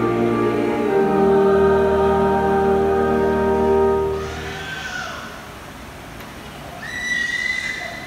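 Music of long held chords that stops about four seconds in, followed by a baby's high wavering cries, the longest near the end.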